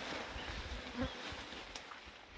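Insects buzzing steadily in dense bush, with a short sharp click near the end.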